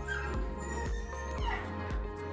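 Background music with a steady beat, over which a mixed-breed dog gives short high-pitched whimpers, the clearest a falling whine about one and a half seconds in.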